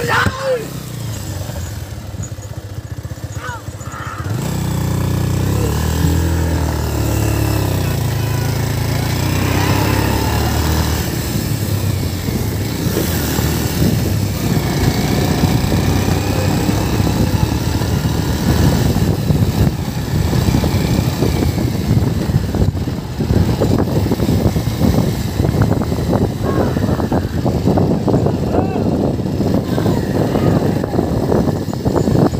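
A small vehicle engine running steadily, louder from about four seconds in, with people shouting over it. In the second half a dense, irregular rattle runs under the engine.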